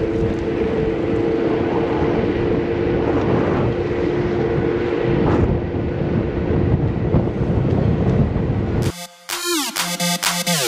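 Electric kick scooter riding along a city street: steady road and wind noise with an even two-note whine from the motor. About nine seconds in it cuts suddenly to electronic dance music with sliding synth tones.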